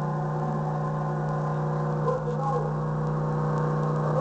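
A steady, low droning hum of several held tones, with faint talking coming in about halfway through.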